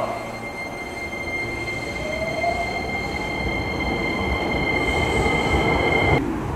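Hankyu electric train moving through the station platform: a steady high-pitched squeal with a motor whine rising in pitch about two seconds in, over a low rolling rumble. The sound cuts off abruptly near the end.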